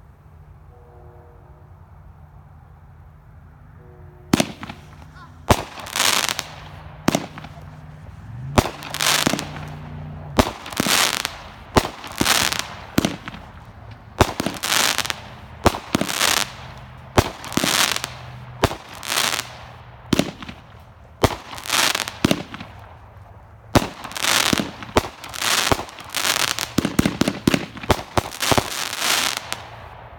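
Great Grizzly's Joker, a 16-shot consumer firework cake, firing. The first shot comes about four seconds in, then a string of launches and aerial bursts follows at roughly one a second, each a sharp report trailed by crackling stars. Near the end the shots come faster and the crackling grows denser.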